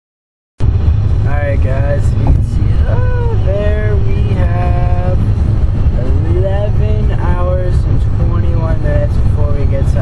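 After a moment of dead silence, loud steady road rumble inside a moving car begins abruptly, with a voice singing over it, holding and sliding between notes.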